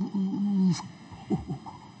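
A woman's voice in stuttered speech: a vowel drawn out steadily for under a second, then a click and a few short, broken vocal starts before the word comes out.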